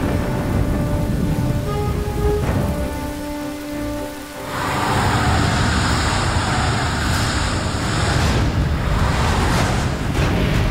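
Heavy rain falling with a low rumble, under background music holding long notes; about halfway through the rain swells into a louder, brighter hiss.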